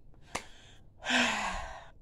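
A woman sighs: a long, breathy exhale with a slight falling voice, starting about a second in. A single short click comes just before it.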